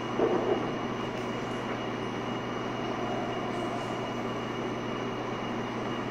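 Steady background noise of a meeting-room recording: an even hiss with a low hum and a faint thin high tone, no distinct events.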